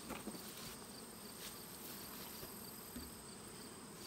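Faint steady high-pitched insect chirring, with a few light clicks near the start.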